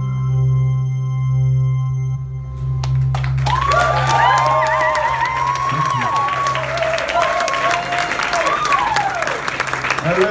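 The band's held final chord rings out and stops about two seconds in. The audience then breaks into applause, with cheering voices over the clapping.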